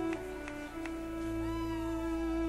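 Violin playing a slow melody of long held notes over a steady sustained accompaniment. In the second half a note slides down in pitch.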